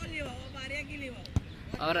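Faint background voices, then one sharp knock about a second and a half in.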